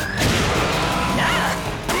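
Cartoon sound effect of rocket-powered roller skates firing: a loud rushing blast that lasts most of two seconds and cuts off abruptly near the end, over background music.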